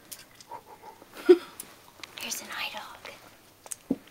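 Hushed whispering voices in short breathy phrases, with a couple of sharp clicks near the end.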